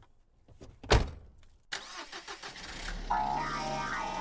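Computer keyboard typing: a few key clicks and one louder knock about a second in. Then a sudden rush of noise, and electronic background music fades in about three seconds in.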